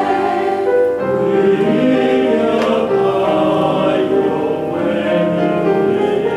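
Church choir singing a Taiwanese hymn in parts with piano accompaniment, holding sustained chords.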